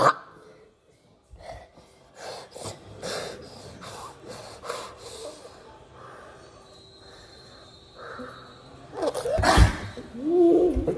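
A person breathing hard in quick, noisy breaths, about two or three a second, after a sharp gasp at the start. A loud vocal outburst comes near the end.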